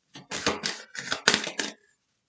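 A deck of tarot cards being shuffled by hand: several quick runs of dense, crisp card clicks.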